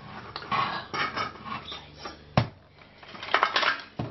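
Steel pot of cooked mussels being tipped over a stainless-steel sink to drain off the cooking water: the lid knocks and clanks against the pot and the shells rattle inside. There are several sharp knocks, the loudest about two and a half seconds in, and a quick run of clatter near the end.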